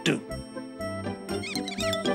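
Cartoon mice squeaking: a quick run of short, high squeaks in the second half, over light background music with a plodding bass line.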